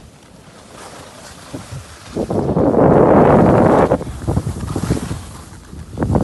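Wind buffeting the microphone with snow scraping under a snowboard on a groomed piste. The sound swells into a loud rush a little over two seconds in, lasts nearly two seconds, then drops back to an uneven scrape.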